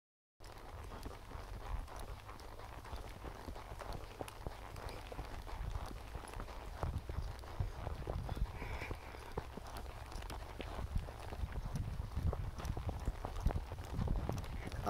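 A horse walking on a dirt trail, its hoofbeats an uneven run of soft knocks, with wind rumbling on the microphone throughout.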